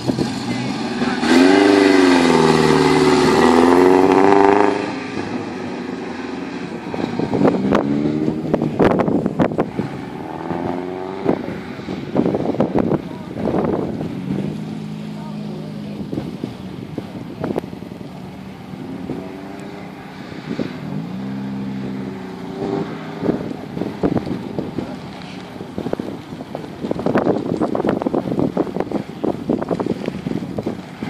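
Morgan sports car engine revving hard as the car pulls away, loudest in the first few seconds, then rising and falling again and again as it accelerates and brakes between cones around a tight course.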